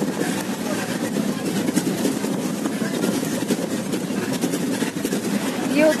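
Bus running, heard from inside the cabin: a steady, loud engine and road noise.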